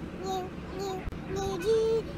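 A young child singing a wordless tune to himself in short, high held notes, ending on a longer, higher note near the end.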